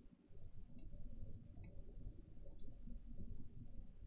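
Three faint computer mouse button clicks, about a second apart, over a low steady background hum.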